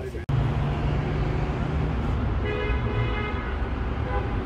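Steady road traffic noise, with a car horn sounding once for about a second past the middle.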